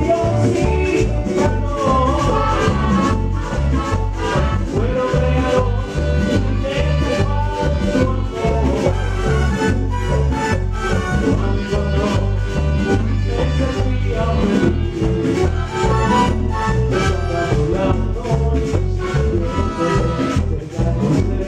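Live salsa band playing a steady, driving beat, with congas and timbales under trumpet and trombone lines.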